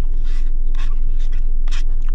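Plastic spoon scraping soft-serve from a paper cup, about four short scrapes, over a steady low rumble inside a car cabin.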